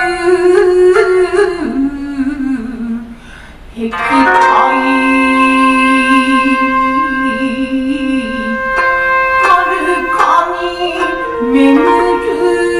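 Shigin, a woman solo-chanting a Chinese-style poem with a wavering, ornamented vocal line over a plucked-string accompaniment. A short breath pause comes about three seconds in, then one long held note of about five seconds before the melody moves on.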